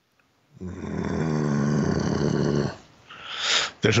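A man's voice making one long, raspy, wordless vocal noise lasting about two seconds, followed by a short breathy hiss.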